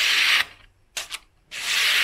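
Blade of a small folding knife with a 9Cr13 steel blade (FoxEdge Atrax) slicing through material in a cutting test. There are two strokes, each a dry hiss lasting half a second to a second, with a pair of light clicks between them. The edge cuts even though it has not been stropped.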